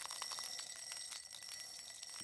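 Small granules pouring from a hand into a glass tumbler: fast, dense ticking as they strike the glass, over a faint steady bell-like ringing.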